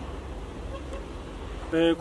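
Steady low outdoor rumble with no distinct events, and a man's voice starting near the end.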